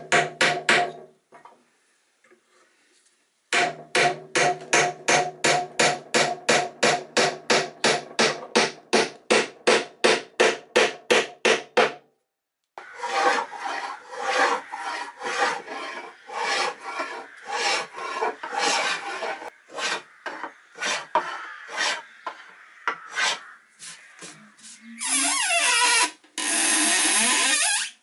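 Hand tools working wood: a long run of quick, even strokes, about four a second, then slower, uneven strokes of a small hand plane taking shavings off a board. A steadier scraping sound lasts a few seconds near the end.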